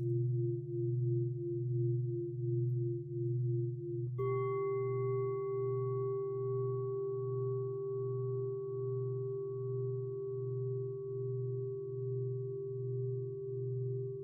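Large Japanese standing temple bells ringing: a deep hum wavers slowly and evenly throughout. About four seconds in, another bell is struck and rings on with a higher, layered tone that fades slowly.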